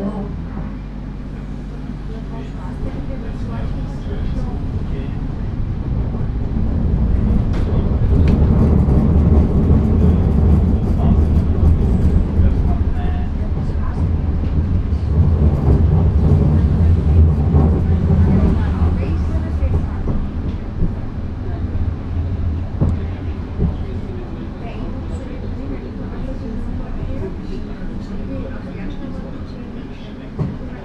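Running noise inside a Badner Bahn light-rail car on street track: a low hum and rumble that builds as the car pulls away, is loudest over the middle stretch, and eases off as it slows toward the next stop, with occasional rattles and clicks.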